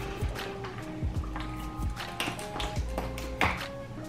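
Quiet background music with held notes, and a few irregular sharp cracks and clicks of snow crab leg shells being broken open by hand.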